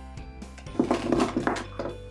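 A handful of small glitter bottles clinking and clattering together as they are set down, a cluster of knocks in the second half, over soft background music.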